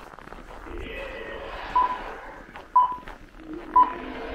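Three short electronic beeps at one pitch, about a second apart, in the second half, over faint outdoor background noise.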